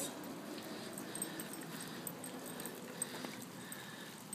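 A chihuahua whimpering faintly.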